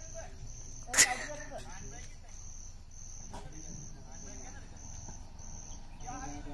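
Insect chirping steadily in high, even pulses, about three every two seconds. A sharp, loud click comes about a second in and a fainter one just after three seconds, over faint voices.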